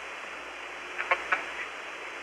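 Steady hiss of archival Apollo air-to-ground radio between transmissions, with a short, faint burst of voice about a second in.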